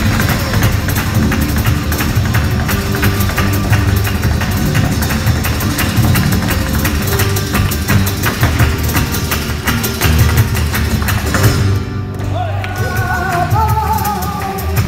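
Live flamenco: rapid zapateado footwork on a wooden stage, with palmas hand-clapping and flamenco guitar. The strikes stop about twelve seconds in, and a cantaor's voice begins a sung line near the end.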